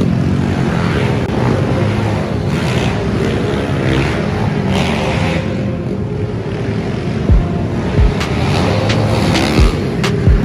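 Several small pit bike and dirt bike engines running and revving, their pitch rising and falling as the bikes ride around inside a large hangar. A few sharp low thumps come in the last three seconds.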